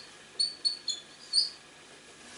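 Dry-erase marker squeaking on a whiteboard as numerals are written and circled: about four short, high-pitched squeaks within a second and a half.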